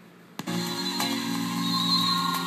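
Internet radio switching stations: a brief quiet gap, a click about half a second in, then the new station's music starts with steady held notes, played through a small old iPod speaker dock.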